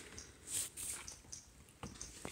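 Faint handling noises as a small vinyl figure is set down on a table, with a light tap near the end.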